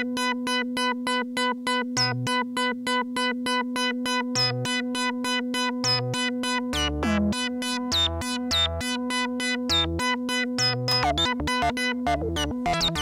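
Eurorack modular synthesizer playing a pattern stepped by a Doepfer A-155 analog/trigger sequencer under an A-154 sequencer controller: short pitched notes at about five a second over a steady drone. About seven seconds in, low bass notes join and the pattern changes, and near the end the notes come quicker and unevenly.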